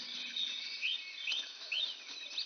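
Small birds chirping: a few short chirps that rise and fall, starting a little under a second in, over faint background hiss.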